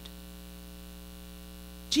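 Steady electrical mains hum, a low unchanging drone with nothing else over it.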